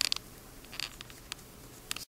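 Faint handling noise: small clicks and rustles in a few short clusters, about four across two seconds, over quiet room tone.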